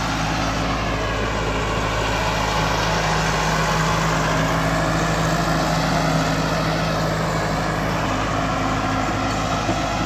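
Farm tractor's diesel engine running steadily while towing a laser-guided land leveler bucket across the soil, a little louder around the middle as it passes close by.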